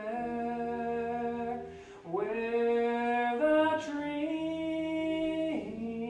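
Unaccompanied hymn singing, slow, with long held notes in phrases of two to three seconds.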